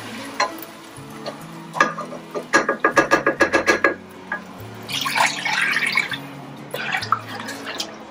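Chicken stock poured from a glass measuring jug into a pot of warming curry paste, splashing and gurgling, while a ladle stirs the pot. A short burst of rapid clicking about three seconds in, over quiet background music.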